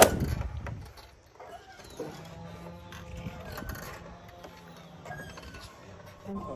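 A low rush of wind on the phone's microphone in the first second as the swing moves, then faint background music with held low notes, under light creaking and clinking of the swing's metal chains.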